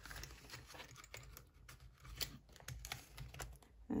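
Paper banknotes and clear plastic binder pouches being handled: faint rustling and crinkling with scattered small clicks.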